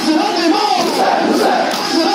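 Large crowd of male mourners chanting and shouting together, many voices overlapping in a loud, continuous din.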